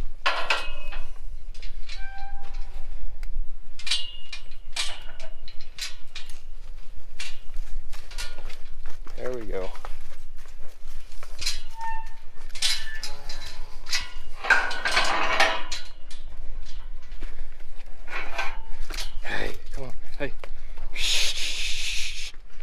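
Cattle being moved through steel pipe corral panels: scattered knocks and metallic clanks, with a few short calls and a loud rush of noise near the end.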